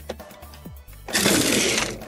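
Two small toy cars spring-launched together from a toy robot's launcher bays, their wheels rolling noisily across a hard plastic track for just under a second, starting about a second in. Background music plays throughout.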